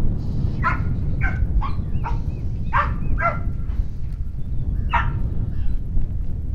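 Blue heeler (Australian cattle dog) barking: a quick run of about six barks in the first three and a half seconds, then one more about five seconds in, over a steady low rumble.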